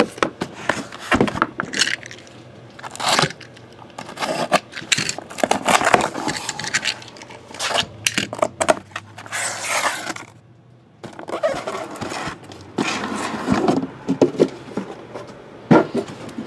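A sealed cardboard case of boxes being opened and unpacked by hand: irregular scraping and rustling of cardboard, with a brief lull a little past two-thirds of the way through, as the wrapped boxes are slid out and stacked.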